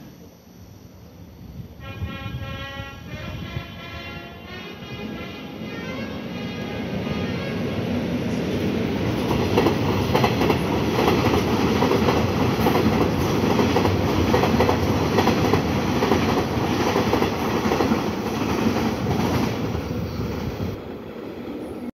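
Korail Line 1 electric commuter train passing through a station at speed without stopping. A horn sounds about two seconds in for a couple of seconds. Then the train's running noise builds into a loud rush with wheels clattering over the rails, loudest in the second half.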